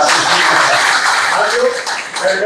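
Audience applauding, a dense clapping that dies away near the end.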